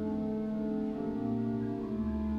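Church organ playing slow, sustained chords over a held bass.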